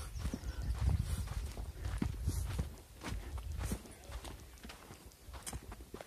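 Footsteps on a sandy granite trail, a step about every half second, over a low rumble that is heaviest in the first half and fades away after about three seconds.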